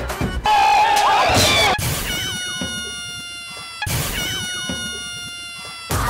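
Comedy sound effect: a loud high cry about half a second in, then a chime of several electronic tones drifting slowly downward, played twice in a row.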